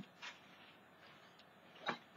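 Quiet handling of a thin plastic stencil sheet being laid on a card on a table: a soft brush of noise just after the start, then one sharp click near the end.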